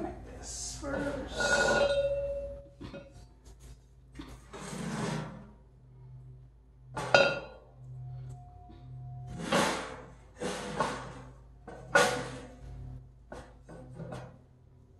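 Steel tubes and mesh panels of a folding hitch cargo rack knocking, clanking and scraping against each other and the tile floor while being fitted together. The sounds come in irregular bursts, with a sharp metal clank about halfway through followed by a short ringing tone.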